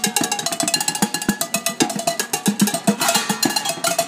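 Pots, pans and metal kitchenware struck with drumsticks as percussion: a fast, steady rhythm of sharp metallic hits, with the pans ringing between strikes.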